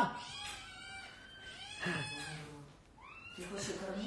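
Domestic cat meowing several times, faintly: short calls that bend in pitch, the last one rising.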